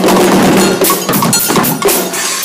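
A Guggenmusik carnival brass band playing while marching: low brass holds a long note for the first second and a half over drums beating throughout.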